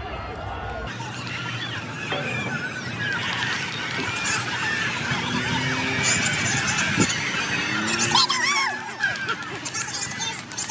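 Crowd of spectators cheering and shouting at a track meet, many voices yelling over one another and building toward a peak, with one sharp clap-like crack about seven seconds in.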